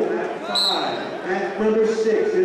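Several people talking and calling out at once in a large, echoing gymnasium, the voices overlapping into a general din. A brief high squeak sounds about half a second in.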